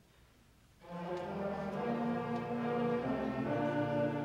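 A school concert band begins a piece about a second in, opening with held brass chords over low brass, after near silence.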